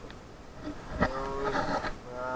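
A man's voice holding a drawn-out vowel sound for nearly a second, starting about halfway in just after a sharp click.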